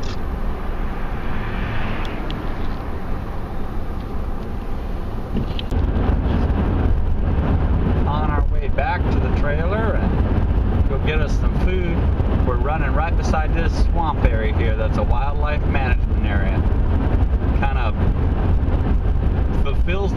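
Road noise inside a moving car: a steady low rumble of tyres and engine that grows heavier about six seconds in, at highway speed, with voices talking in the background.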